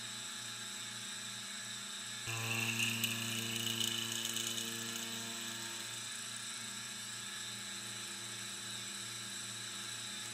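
Milling machine spindle running with a steady hum as a long-reach end mill takes a light finishing side cut in brass. About two seconds in it gets louder and a higher whine joins it, which eases off after a few seconds.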